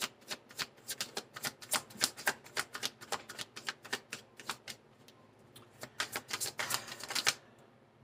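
A deck of tarot cards being shuffled by hand: a quick, uneven run of light card clicks and slaps, stopping for about a second around the middle, then starting again.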